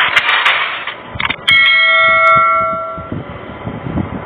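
Subscribe-button animation sound effects: a hiss of noise that fades in the first second, a couple of mouse clicks, then a bell chime about one and a half seconds in that rings on and fades out over the next second and a half.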